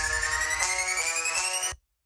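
Underground drill instrumental in a build-up: a rising pitched sweep over held chords, with the drums dropped out. Everything cuts off suddenly near the end, leaving a brief gap before the beat drops.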